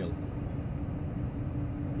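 Cab interior noise of a semi-trailer truck cruising in traffic: a steady low rumble of the diesel engine and road, with a constant hum.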